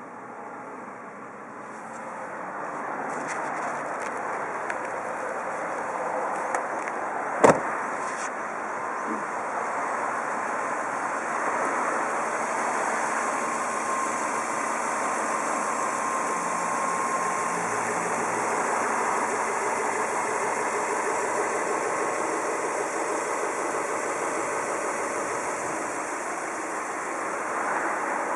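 Toyota Celsior's 1UZ-FE V8 idling steadily, a smooth idle that the seller calls in good condition. A single sharp knock comes about seven seconds in.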